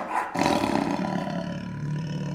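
A long, rough roar that starts suddenly and then holds steady, like a big-cat roar sound effect.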